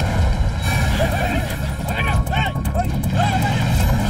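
Several men shouting and yelling over one another in a scuffle, short cries that rise and fall in pitch and come thick from about halfway through, over a steady low rumble.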